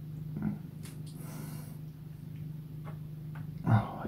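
Steady low hum of room noise with a few faint ticks, and a short, low, grunt-like voiced sound near the end.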